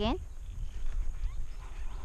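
Low, uneven rumbling from a horse being ridden at a walk, heard from the rider's head, with no clear hoofbeats.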